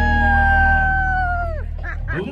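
A live dance band ends a song: one long high note held for about a second and a half, then sliding down and cutting off, over a sustained low chord.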